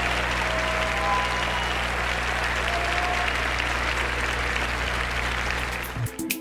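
Large audience applauding steadily, with a low steady hum beneath it.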